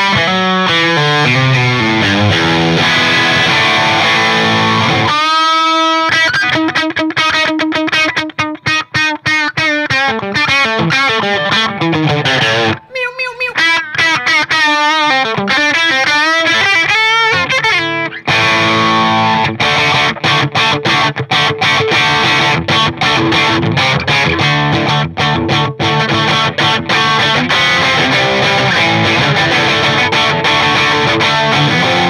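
Electric guitar played through an Electronic Audio Experiments Halberd V2 overdrive pedal, with a fat overdriven tone. Riffs and chords run throughout, with a long held note about five seconds in.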